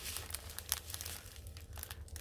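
Clear plastic packaging holding bags of diamond-painting drills crinkling as it is handled in the hands: irregular crackling, busiest in the first half second.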